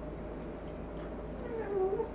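A short, high-pitched vocal call near the end, dipping and then rising in pitch, over a steady low background.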